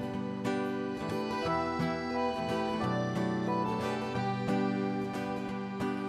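Live folk-pop band playing the instrumental introduction of a quiet song, with acoustic guitars picked and strummed over sustained chords at a slow, even pace.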